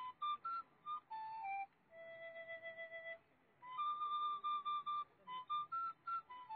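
Solo flute playing a slow melody: short notes stepping up and down, then a long low held note about two seconds in, followed by a run of higher notes.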